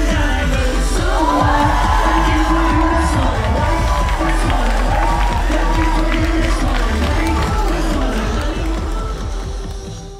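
Live pop music played loud through a concert sound system, a heavy bass beat with voices on top, over a crowd cheering; it all fades out near the end.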